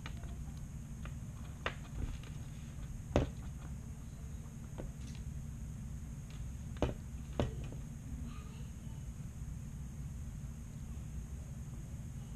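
Steady low background hum with a few sharp, small clicks of metal tools touching the drone's board and parts during soldering, four in all, spread through the first two-thirds.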